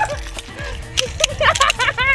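Spring mousetraps snapping shut as they are stepped on: several sharp snaps, a few of them close together about a second in. Background music and voices run underneath.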